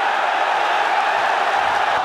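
Large arena crowd cheering in a loud, steady swell, reacting to an exchange of punches.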